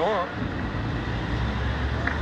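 Steady low rumble of a passing motor vehicle, growing slightly louder in the second half.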